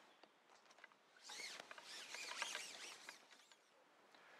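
Near silence, with a faint run of quick, high bird chirps in the middle.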